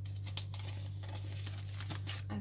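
Plastic binder sleeves and sticker sheets rustling and crinkling as they are handled, with a few sharp crackles, over a steady low hum.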